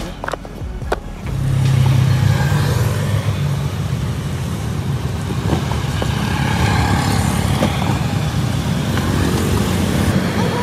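Road traffic passing close by: a steady engine drone from motorbikes and a tuk-tuk that comes in loudly about a second in, after a few light clicks.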